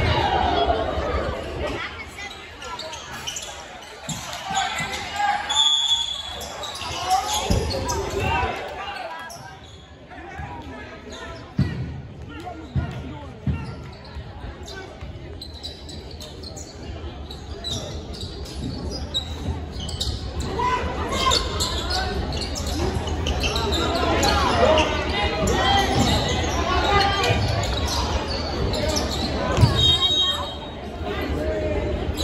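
Basketball bouncing on a hardwood court, with spectators talking over it in an echoing gymnasium.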